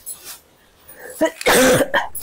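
A woman gives one loud cough about one and a half seconds in, amid the rustle of silk sarees being handled.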